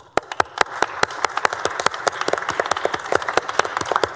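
A crowd applauding: scattered claps that fill out into steady, dense clapping within the first second.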